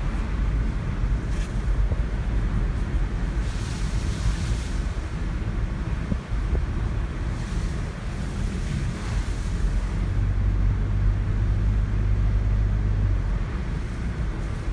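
Steady road noise inside a moving car's cabin: low tyre and engine rumble with a wind hiss that swells twice. A steady low drone joins in about ten seconds in.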